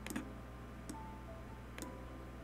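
Three sharp computer mouse clicks, about a second apart, over faint jazz music playing in the background.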